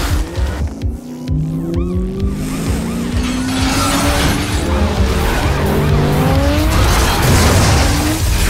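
Car engines revving hard in several rising runs, with tyre squeal, over dramatic film-score music and action sound effects.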